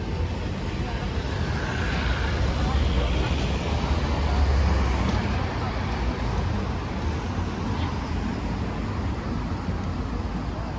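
Road traffic passing on a busy multi-lane city street: a steady low rumble of car and bus engines and tyres that swells to its loudest about four to five seconds in, as a vehicle passes close.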